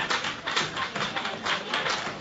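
Massage hammer tapping repeatedly on a person's back, about three or four taps a second.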